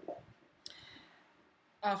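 A single short click about two-thirds of a second into a lull in conversation, followed by a brief fading hiss; speech resumes near the end.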